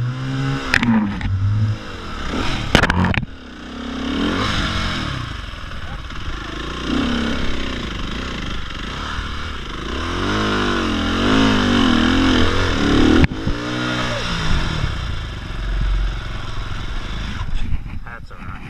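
Trail bike engine revving up and down in repeated bursts as it is ridden over rough ground, with a few sharp knocks in the first three seconds.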